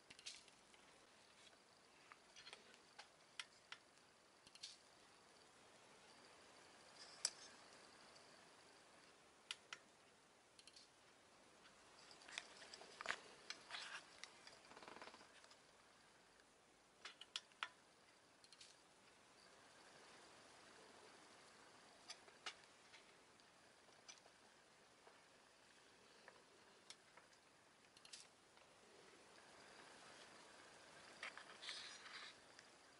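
Near silence, broken by faint, scattered sharp clicks and crackles, most of them clustered about twelve to fifteen seconds in.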